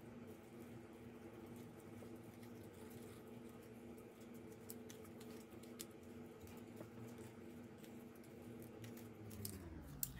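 Faint crinkling and small ticks of a cut spiral of printed paper being rolled tightly between the fingers into a rolled flower, over a faint steady hum.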